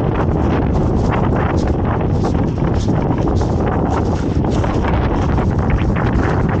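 Wind buffeting the microphone, loud and steady throughout, with footsteps crunching on gravel about twice a second.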